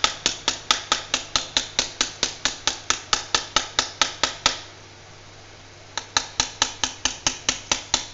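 Steel ladle tapping rapidly on a perforated steel boondi plate full of gram-flour batter, knocking the batter through the holes as drops into the frying oil. The metallic taps come about five a second, pause for about a second and a half midway, then resume, with a faint steady hiss underneath.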